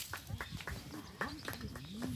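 Faint background voices from people standing nearby, low and indistinct, with a few light clicks in between.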